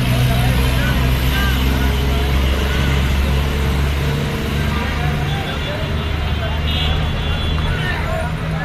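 Busy road traffic with trucks and buses passing, a steady low engine rumble.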